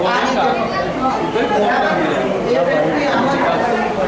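Chatter: several people's voices talking over one another.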